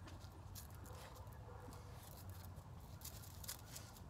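Faint scattered rustles and clicks as a dog searches, nose down, among dry leaves around a porch chair, over a steady low background rumble.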